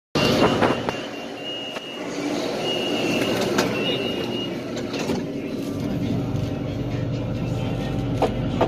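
BTS Skytrain EMU-A door-closing warning: a high beep sounds four times over the first few seconds while the doors are open, then the doors knock shut. A low steady hum from the train builds near the end.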